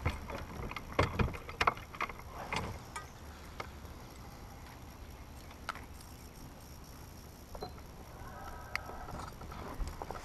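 Scattered knocks and clicks of fish and gear being handled on a bass boat deck, most of them in the first few seconds, over a steady low rumble.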